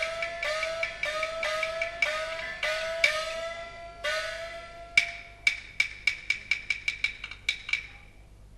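Peking opera percussion. A small gong (xiaoluo) is struck about twice a second, each stroke sliding up in pitch. About five seconds in, the gong gives way to a quickening run of sharp clicks that stops just before the end.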